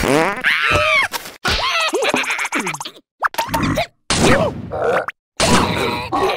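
Cartoon character voices in wordless squeals, groans and grunts that slide up and down in pitch, mixed with short comic sound effects. The sound cuts out abruptly a few times: about three seconds in, at four seconds, and again just after five seconds.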